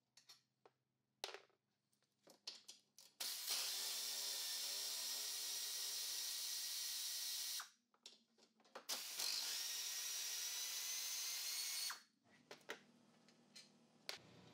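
Pneumatic air ratchet with a 12 mm socket spinning bolts out, in two steady runs of about four and three seconds. Light clicks of the socket being fitted come before and after.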